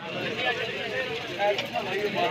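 Many people talking at once: overlapping background conversation of a crowd at a meal, with no one voice standing out.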